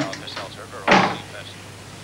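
A door closing with a single short thud about a second in.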